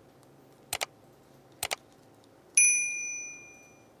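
Subscribe-reminder sound effect: two mouse clicks about a second apart, then a bright bell ding that rings out for about a second.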